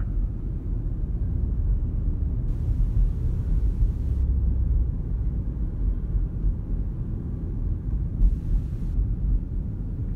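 Car cabin noise while driving: a steady low rumble of engine and tyres on the road, with two short hisses, about three seconds in and about eight seconds in.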